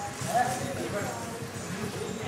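People's voices talking, over a busy low clatter in the background.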